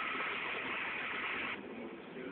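Steady background hiss of room and recording noise in a pause of speech, dropping off suddenly about one and a half seconds in.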